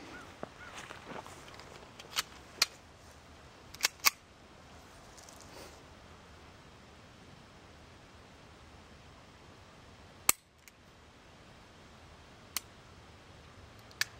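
Six sharp cracks from a Walther P22 .22 pistol firing CCI Stinger rounds at a steel target. The shots are unevenly spaced: two in quick succession about two seconds in, two more about four seconds in, then single shots near ten and near twelve seconds.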